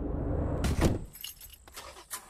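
Car keys jingling in the groom's hand, with sharp knocks just before a second in, probably the driver's door or seat, as a low drum-heavy music cue fades out.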